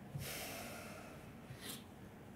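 A man's long breath out close to a microphone, fading over about a second, followed near the end by a short sniff.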